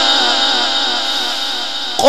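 A male Quran reciter's voice in the melodic mujawwad style, holding the end of a long ornamented phrase whose pitch wavers up and down and slowly fades.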